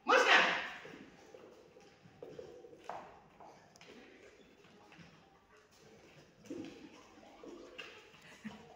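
A sudden loud sound at the very start, then a dog nosing and mouthing rubber toy balls on a hard floor, with a few faint knocks and scuffs.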